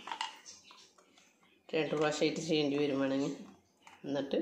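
A woman speaking briefly in the middle. Before that, a few faint knocks as pieces of cooked beetroot are dropped into a steel mixer-grinder jar.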